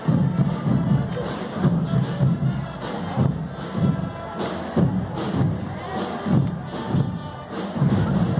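Parade band music with a heavy drum beat, about two beats a second, over the noise of a crowd.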